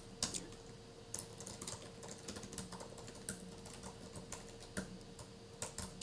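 Computer keyboard typing: quiet, irregular key clicks as a line of code is typed, over a faint steady hum.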